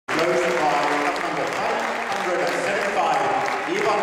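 Audience applauding steadily, with a man's voice talking over it through the hall's loudspeakers.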